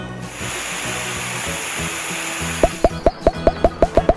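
Hose water-spray sound effect: a steady hiss that stops after about two and a half seconds. It is followed by a quick run of short rising pops, about six a second, as cartoon effects for seedlings springing up, over background music.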